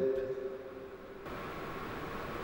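A pause in a man's speech: steady low room noise and hiss, with the last of his voice dying away at the start and the hiss turning a little brighter about a second in.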